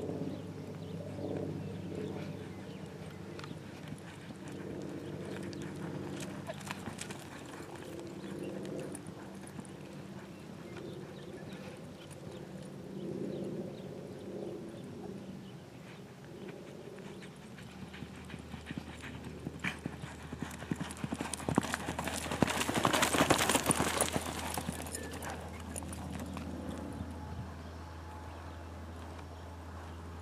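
Horse's hoofbeats on loose arena dirt as it is ridden at speed through the poles. The hoofbeats are loudest and thickest a little past two-thirds of the way through, as the horse comes close, then ease off.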